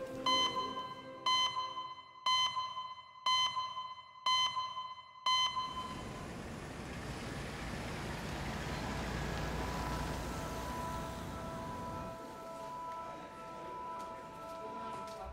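An electronic beep repeated six times at an even pace of about one a second, each note ringing out briefly. It is followed by a steady low rumble of street traffic.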